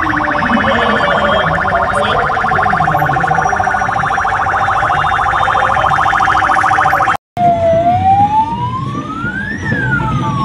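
Electronic vehicle siren in a fast warble for about seven seconds. After a brief cut, a siren wail rises slowly in pitch for about two seconds and then begins to fall.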